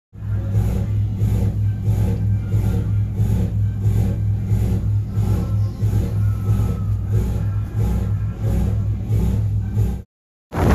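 A sportfishing boat's inboard engines running, a loud steady low drone with an even pulsing about two to three times a second.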